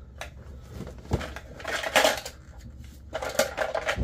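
Items being handled and pulled out of a tote bag of papers and plastic: irregular rustling and crinkling, with a short knock about a second in.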